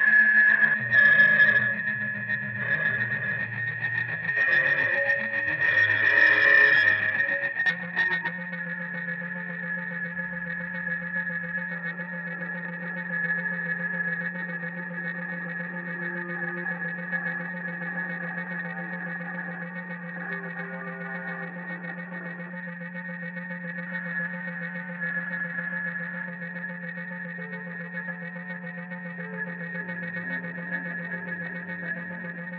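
Electric guitar sent through effects pedals into an amplifier, making distorted noise: shifting low notes under a steady high whine, then about eight seconds in a sudden change to a sustained low droning tone with the whine held above it.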